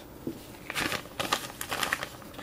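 Crinkling and light clicking from craft materials being handled on a tabletop, in a few short irregular bursts in the second half.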